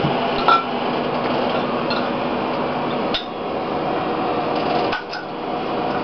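Bottle opener clinking and scraping on a bottle cap as a child pries at it, with a few sharp clicks, the clearest about three seconds in and near the end, over a steady room hum.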